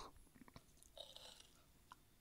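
Near silence: room tone with a few faint clicks and a brief soft rustle about a second in.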